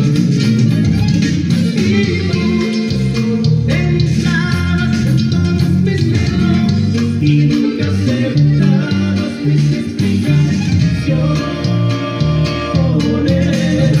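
Five-string electric bass playing a norteño-style bass line along with a recorded song that has a singing voice. The bass notes change steadily, with no break.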